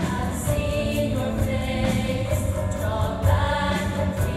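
Large mixed choir singing long held chords over a low instrumental accompaniment.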